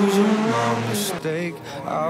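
Rally car engine pulling hard as the car drives away up the stage. About a second and a half in it gives way to a song with male vocals.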